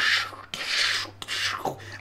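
Two breathy hissing sounds from a man's mouth close to the microphone, a short one and then a longer one, with no words. They fall in a pause in narration about lightning strikes.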